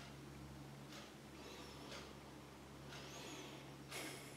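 Near silence: quiet room tone with a steady low electrical hum and a few faint, soft handling sounds.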